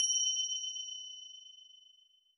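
A bell-like ding sound effect ringing out: two high, clear tones fading away evenly over about two seconds.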